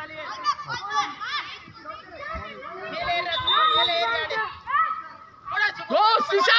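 Children's voices calling and shouting to one another, several high voices overlapping, with a brief lull just before the end.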